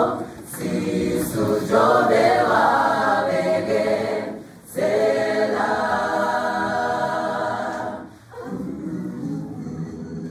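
Mixed choir of men and women singing in harmony, holding long chords in phrases broken by brief pauses about half a second, four and a half seconds and eight seconds in.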